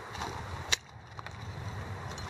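A single sharp click a little before halfway through, over low steady background noise.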